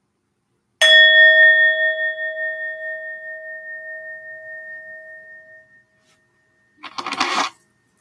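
Metal singing bowl struck once about a second in, ringing with a clear tone and higher overtones that waver and fade away over about five seconds, rung to mark the start of a meditation sit. A short rustling noise comes near the end.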